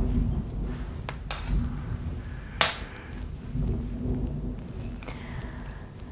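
Rustling and low rumbling of a woven blanket and clothing as a person lying on a yoga mat pulls the blanket over herself and settles, with a few soft taps about a second in and again near three seconds.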